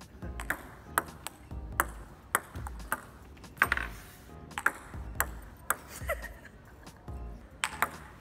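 Table tennis rally: a celluloid ball clicking off the table and rubber paddles about every half second, pausing near the end before a couple more quick hits.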